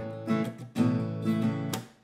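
Acoustic guitar being strummed, a chord ringing on, with two fresh strums about a second apart.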